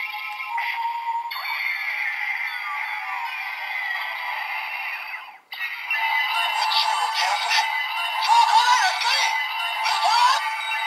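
Electronic transformation music and sound effects from a DX GUTS Sparklence toy playing a GUTS Hyper Key's sequence through its small speaker, thin with no bass. The sound breaks off briefly about five and a half seconds in, then comes back louder.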